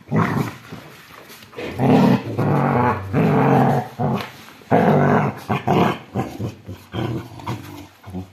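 Dogs growling in repeated long bouts as a Rottweiler and a yellow Labrador puppy tussle over a ball. The loudest growls come between about two and four seconds in and again about five seconds in.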